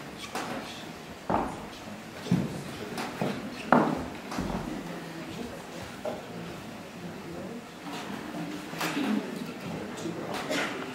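A few knocks and clunks of stage equipment being handled, the loudest about four seconds in, over a low murmur of voices in a reverberant hall.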